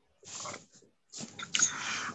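A person's breath close to a video-call microphone: two short, breathy bursts of noise, the second longer.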